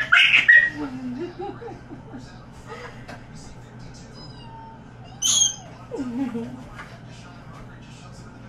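A toddler whimpering and squealing in short, bending vocal bursts while being towel-dried, with a loud cry right at the start and a sharp high squeal about five seconds in.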